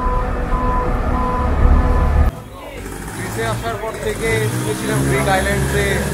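A strong low rumble with a faint intermittent steady tone over it. About two seconds in it cuts off suddenly and gives way to voices of people talking.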